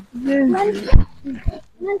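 People's voices in short, broken utterances, with a sharp thump about a second in and a smaller one shortly after.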